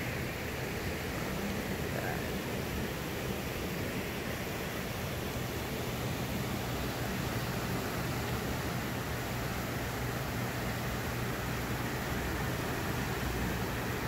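Fast, turbulent water rushing and churning where the dam's powerhouse discharges into the tailrace, a steady rushing noise with a steady low hum beneath it.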